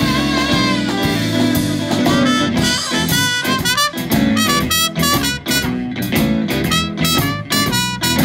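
Live blues band playing an instrumental passage, with a trumpet soloing over electric guitars, bass and drum kit; the lead line breaks into quick short notes about halfway through.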